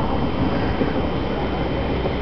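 Steady low rumble of gusty wind on the microphone as a thunderstorm's outflow arrives, with a faint hiss above it.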